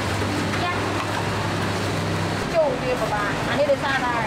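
Street ambience with a steady engine hum that cuts out about two and a half seconds in, followed by people talking.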